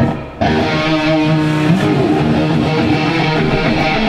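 Electric guitars of a metal band at sound check breaking into loud playing about half a second in, sustained chords and notes ringing out on the stage rig.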